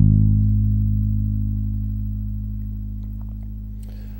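Electric bass guitar: one low note, the fourth-fret note on the E string (G sharp), plucked once and left to ring, fading slowly.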